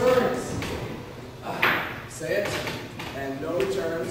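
Indistinct voices of actors speaking on a stage, echoing in a large hall, with a single sharp knock about a second and a half in.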